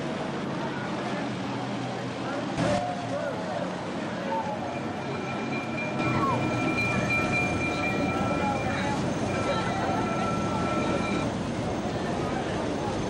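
Vintage motor vehicles, an old fire engine and then an old delivery lorry, driving slowly past with their engines running, over the chatter of onlookers. The engine sound grows louder about halfway through as the lorry comes close, and a steady high tone sounds for several seconds from about five seconds in.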